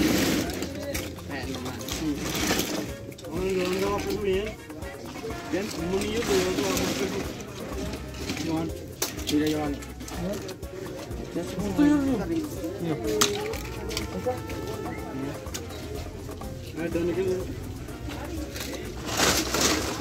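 Small plastic toy cars and figures clattering and knocking together as a crate of them is tipped out and rummaged through by hand.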